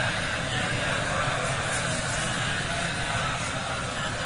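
Steady rushing noise with a low rumble, even throughout, with no distinct events.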